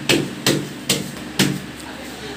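Four sharp knocks about half a second apart: a hard hand tool striking the concrete where the wall meets the floor.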